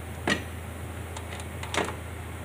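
Two short knocks, one just after the start and one near the end, with a few faint ticks between them, over a steady low hum.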